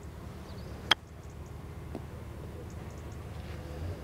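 A Ping Glide Forged Pro wedge striking a golf ball on a short chip shot: a single crisp click about a second in. A low, steady background rumble runs underneath.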